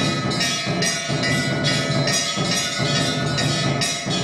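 Brass temple bell rung by hand over and over, about three clangs a second, its tones ringing on between strikes.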